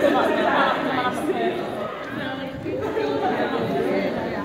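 Chatter of many voices talking over one another, a crowd of girls and women at tables in a large hall.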